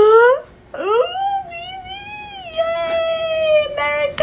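Four-month-old baby vocalizing: a short rising squeal at the start, then one long high-pitched squeal that rises and then holds for about three seconds.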